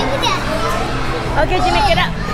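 Children's voices and shouts in a busy indoor trampoline park, over a steady low hum of background din.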